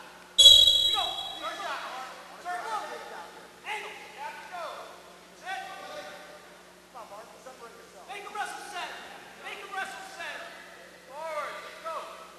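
A referee's whistle blows once, sharp and brief, about half a second in, starting the wrestlers from the neutral position. Voices shout in the gym afterwards.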